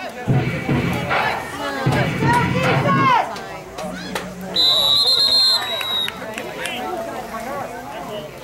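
Voices shouting, then a referee's whistle blown once for about a second and a half, a little past halfway: the play is whistled dead for a false start against the offense.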